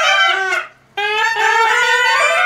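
Muhali, the Nepali Newar double-reed shawm, played by two or more musicians in a reedy, nasal melody. The line stops for a moment a little after half a second in, then comes back.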